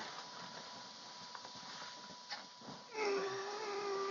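A crying man, quiet at first, then about three seconds in a long, steady, high-pitched whimper.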